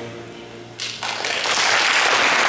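The last notes of piano and strings die away, and audience applause breaks out about a second in, quickly swelling to full clapping.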